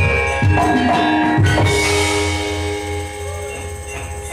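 Javanese gamelan ensemble playing with drums: a few drum strokes in the first second and a half over ringing metallophone tones, which then hold and slowly fade.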